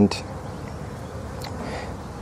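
A steady low buzz over background noise, with a short click about one and a half seconds in.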